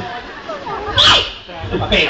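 People's voices talking, with a short, sharp hissing burst about a second in.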